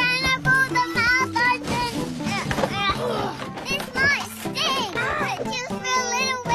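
Several children's voices shouting and squealing together over background music.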